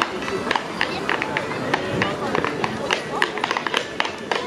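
Step clog dancing: clogs striking a wooden dance floor in quick, irregular taps. A fiddle plays faintly underneath.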